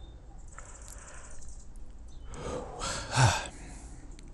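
A person yawning to hold off a sneeze: a breathy intake, then a voiced yawn that swells to its loudest about three seconds in and fades.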